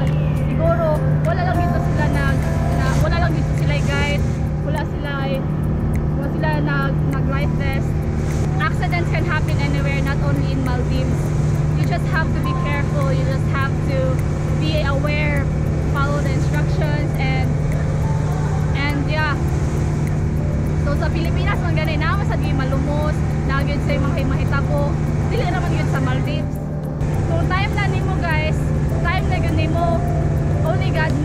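Steady low drone of a boat's engine running under a woman talking, with background music.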